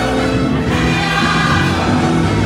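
Live gospel music played loud and steady, with many voices singing together over the band.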